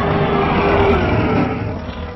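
Loud roar sound effect, dying away over the last half second or so.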